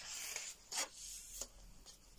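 A coloring-book page being turned by hand, paper rustling and sliding: a soft rustle at first, then a few brief papery swishes.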